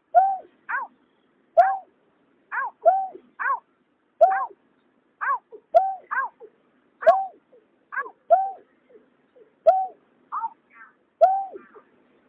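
Recorded calls of greater painted-snipe and cà cuốc: short calls in quick succession, well over one a second and sometimes in close pairs. Each sweeps down in pitch into a hooked note and starts with a sharp click.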